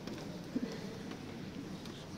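Quiet church room tone with faint rustling and a few small clicks, and a brief low sound about half a second in.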